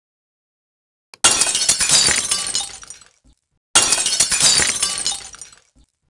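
Glass shattering twice. Each crash starts suddenly and fades out over about two seconds: the first about a second in, the second about two and a half seconds later.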